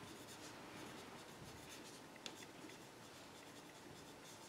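Faint scratching of a pencil writing on paper in short strokes, with one small tick about two seconds in.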